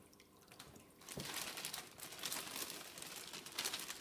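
A clear plastic bag crinkling and rustling as it is handled and pulled closed over the incubator, starting about a second in.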